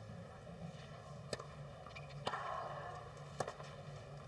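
Tennis racket strikes on the ball in a rally: three sharp hits about a second apart, faint against a quiet background.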